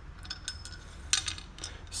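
Metal fork parts being handled: a few light metal ticks, then one sharper clink about a second in, as the steel oil lock piece goes into the aluminium fork slider of a 39 mm Harley fork.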